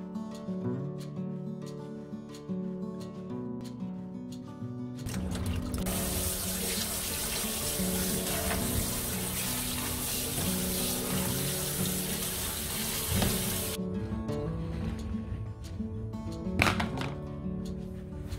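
Light background music throughout. From about five seconds in, a kitchen tap runs water onto jujubes being rubbed clean in a metal strainer, and the water stops abruptly about fourteen seconds in. A single sharp click near the end.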